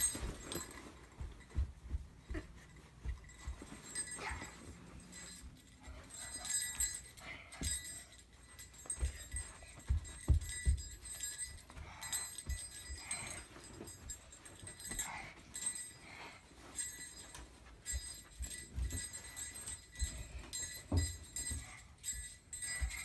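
A small child's feet stomping and jumping on a carpeted floor in irregular thumps, with light bell-like jingling that comes and goes as he dances.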